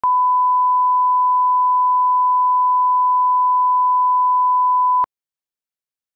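A 1 kHz line-up test tone, the reference signal that accompanies colour bars for setting audio levels: one steady, loud pure beep that cuts off abruptly about five seconds in.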